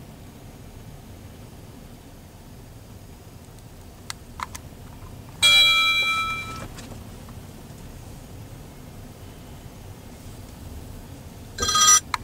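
Dump truck and trailer sitting with a low, steady engine rumble after unloading. About five and a half seconds in, one sudden ringing clang fades over a second or so, and a second ringing sound comes near the end.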